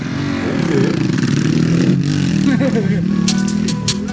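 Dirt bike engine running and revving, with voices over it. Music with a beat comes in near the end.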